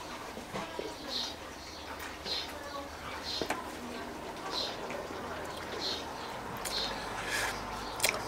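A man sips beer from a glass and swallows. A faint high chirp repeats about once a second throughout.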